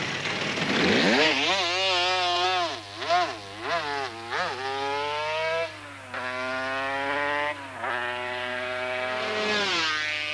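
Motorcycle engine accelerating hard: the revs rise about a second in and swing up and down a few times, then the bike climbs through the gears, with the pitch dropping at each upshift roughly every two seconds.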